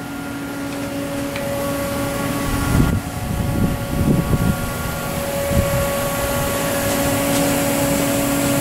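Steady machine hum from a powered-up Haas TL-4 CNC lathe, several fixed pitches over a noisy wash that grows slightly louder. A few low rumbling bumps come in around the middle.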